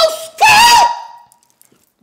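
A person's high-pitched voice holding one short sung note that bends at its end and fades away a little over a second in.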